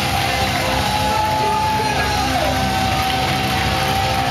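Live power metal band playing loud and dense, with a high held note that slides down about two and a half seconds in.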